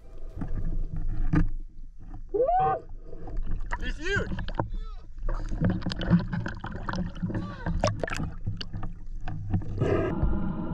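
Seawater sloshing, bubbling and splashing around an action camera at and just under the surface, full of small clicks and crackles. Two short muffled voice calls with gliding pitch come a couple of seconds in.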